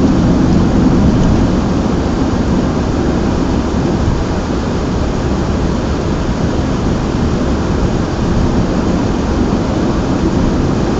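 Steady low rumble of a car in motion heard from inside the cabin: tyre, road and engine noise at a constant level, with no distinct events.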